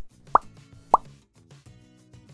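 Two short 'plop' pop sound effects, each a quick upward-sweeping blip, about half a second apart, as animated on-screen icons pop in. They play over soft background music.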